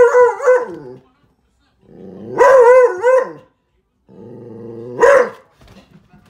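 A Doberman/Border Collie mix dog giving three drawn-out, wavering howling barks, each about a second or more long, the last rising to a sharp peak near the end: its alarm call at the window for the mail carrier.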